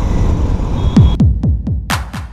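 Motorcycle and traffic noise while riding, giving way about a second in to electronic music: a quickening run of deep kick-drum hits that fall in pitch.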